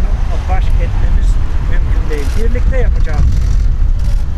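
Indistinct speech from a man talking to a driver at a car window, over a loud steady low rumble of road traffic and wind on the microphone.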